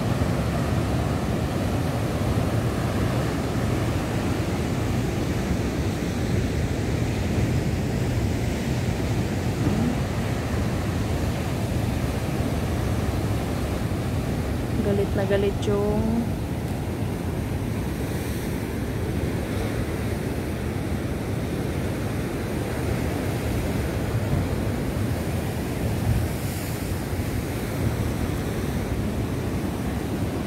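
Heavy surf breaking against a concrete breakwater: a steady, loud rush of rough sea. A short voice-like call cuts in about halfway through.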